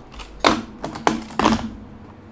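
Keys being typed: a quick run of about six sharp key clicks over about a second, the first the loudest.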